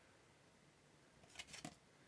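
Near silence: room tone, with a faint brief sound and the start of a spoken word near the end.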